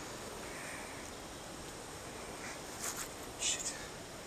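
Steady, quiet riverside background hiss, with a few brief soft water splashes in the second half as a Murray cod is lowered back into the river shallows.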